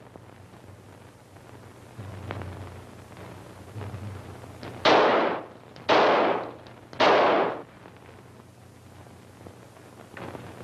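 A revolver fired three times, about a second apart. Each shot is a sharp bang that dies away over about half a second.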